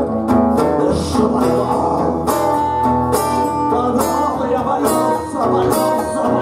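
A live acoustic blues: steady acoustic guitar accompaniment, with a harmonica played into a cupped hand-held microphone carrying a lead line of long held and bending notes over it.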